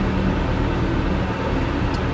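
Steady engine drone heard from inside a tractor cab, with a forage harvester running alongside, at an even level with no change in pitch.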